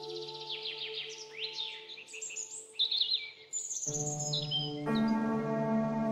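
Birds chirping in quick trills and short falling whistles, layered over soft, sustained ambient meditation music. About four seconds in, a deeper sustained chord comes in and the music grows fuller as the birdsong fades out.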